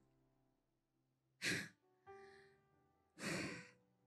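Two loud breaths close to a microphone, the first about a second and a half in and the second near the end, over soft sustained keyboard chords.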